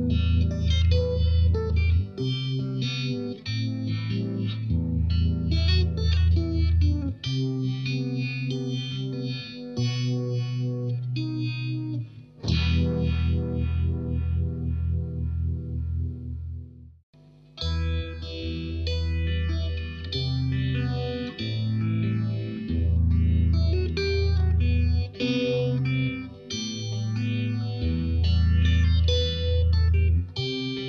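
Electric guitar, a Fender Stratocaster, playing chords and riffs through a Uni-Vibe-style vibe effect that gives its tone a pulsing, throbbing wobble. The playing breaks off a little past halfway and resumes through a phaser pedal, with a smoother, even sweep.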